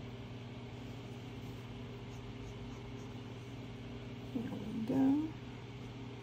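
A steady low hum, with a short voice-like sound that rises in pitch about four and a half seconds in.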